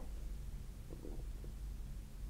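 Quiet room tone with a low steady hum, and a faint short sound about a second in.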